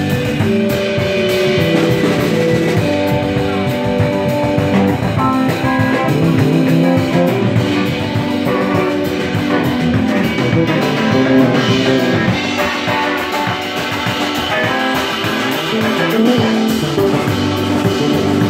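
Live band playing an instrumental passage: Hammond organ, electric guitar, electric bass and drum kit.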